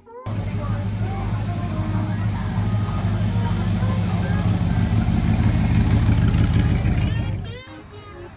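Classic Chevrolet Corvette's V8 engine running with a steady low rumble as the car rolls slowly past close by. It grows a little louder, then breaks off shortly before the end.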